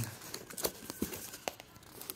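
Fingers prying at the flap of a small cardboard product box to open it: a few light clicks and scrapes, about one every half second to second, over faint rustling.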